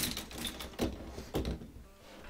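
A few dull knocks and clunks: a sharp click at the start, then two softer thuds about a second apart.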